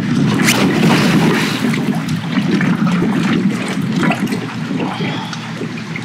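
Water splashing and sloshing as a person slips into the shallow water beside a kayak while launching it, with a few sharp knocks in the first seconds; the splashing eases off toward the end.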